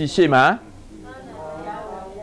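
Only speech: a man talking loudly, then after about half a second a softer, quieter voice.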